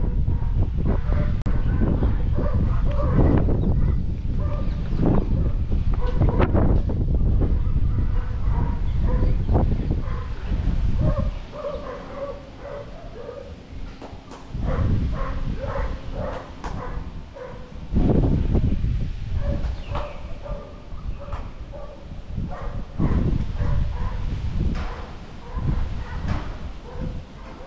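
Wind buffeting the microphone in gusts, with short, repeated high yelping calls over it. The rumble drops away for a few seconds about halfway through.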